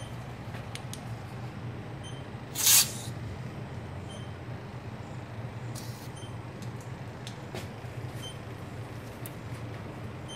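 Aerosol can of leak-detection foam sprayed in a short hiss about two and a half seconds in, with a fainter, briefer hiss around six seconds, over a steady low hum.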